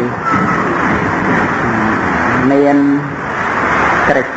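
A loud, steady rushing noise with a man's voice heard briefly about two and a half seconds in.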